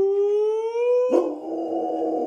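Rottweiler howling: one long howl, a clear held tone that rises slightly, then turns rougher about a second in and carries on.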